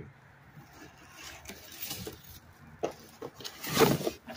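Handling noise as a package is picked up: scattered light knocks and rustling, with a louder rustle near the end.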